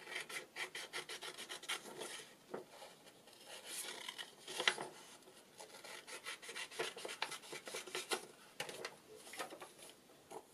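Scissors snipping through printed cardstock in quick runs of short cuts. Between the runs, the card rustles and rubs as it is turned in the hand.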